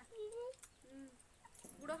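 A domestic hen making a few soft, short calls that rise and fall in pitch, with a spoken word near the end.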